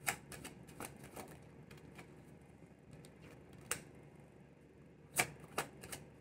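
A deck of tarot cards being shuffled by hand: irregular sharp clicks and flicks as cards slap against the deck, with a cluster right at the start and the loudest snaps about five seconds in.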